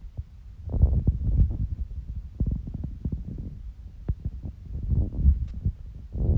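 Chewing and eating noises close to a phone's microphone: irregular low thumps with small clicks.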